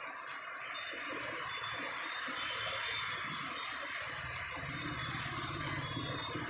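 Street traffic: a steady hiss of cars moving on the road, with a low engine rumble growing louder about four seconds in as a vehicle comes closer.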